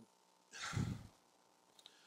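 A man's single heavy sigh, one breath out lasting about half a second, followed by a couple of faint clicks near the end.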